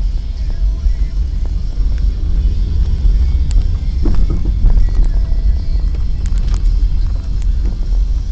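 Low, steady rumble of a car in motion, with faint music under it.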